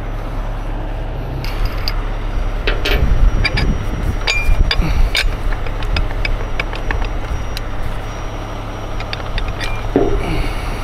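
Heavy diesel engine running steadily nearby, with scattered metal clicks and clinks as a rigging hook and shackle are handled on the machine's boom.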